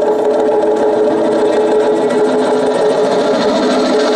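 Accordion, cello and a bowed folk string instrument playing long held notes together, a steady high drone with a lower note joining partway through and a rapid trembling texture over it.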